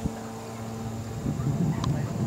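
Wind rumbling on the microphone from a little past halfway, over a faint steady low hum, with a short click near the end.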